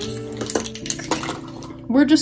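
Background acoustic guitar music with steady held notes, and a few light clicks of plastic markers being handled on a desk about half a second to a second in.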